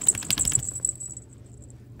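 Small metal bell on a dog's collar jingling rapidly as a chihuahua jerks its head and body about, busiest in the first second and dying away before the end, with a soft low thump about half a second in.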